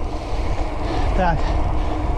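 Steady low wind rumble on the camera microphone from riding a mountain bike over brick paving, with a single short word spoken about a second in.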